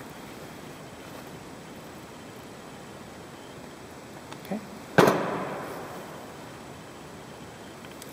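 A single sharp metal clank about five seconds in, ringing briefly as it dies away: a steel adjustable wrench set down on a metal tool cart during work on a grease-gun fitting.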